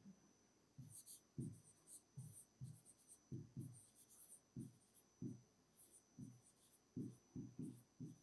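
Faint scratches and taps of a pen writing on an interactive display board, in a run of short, irregular strokes about two a second.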